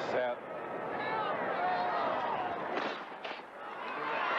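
Stadium crowd chatter, then the starter's pistol firing to start a sprint race: a sharp crack about three seconds in, with another about half a second later.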